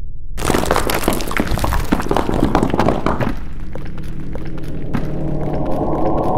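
Cinematic logo-reveal sound effect: rock cracking and crumbling with heavy thuds, starting sharply about half a second in and easing after about three seconds. Near the end a single sharp hit leaves a low ringing tone.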